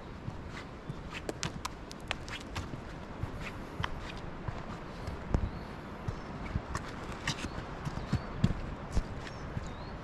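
Footsteps on a stony, gravelly roadside: irregular steps and scuffs, a few a second, over a steady background noise.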